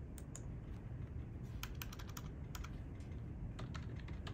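Typing on a computer keyboard: irregular key clicks, a few near the start, a quick run in the middle and a couple near the end, over a low steady hum.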